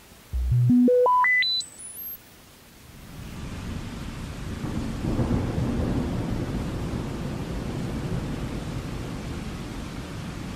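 Opening of a recorded rock track: a rising series of pure electronic tones, each an octave above the last, climbs in about nine quick steps over two seconds. From about three seconds in, a rumbling noise swells in and holds steady.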